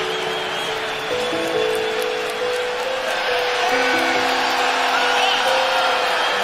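Slow background music with long held notes over the dense noise of a large arena crowd cheering.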